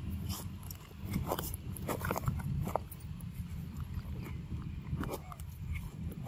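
Macaques moving over leaf litter and eating yellow fruit: a string of short clicks, rustles and brief animal sounds, busiest from about one to three seconds in, over a steady low rumble.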